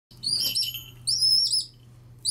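A hawk calling: two high-pitched, clear calls about half a second each, each ending in a short downward slur.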